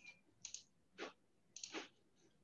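Near silence broken by three or four faint, short clicks about half a second apart: computer mouse clicks as a screen share is started.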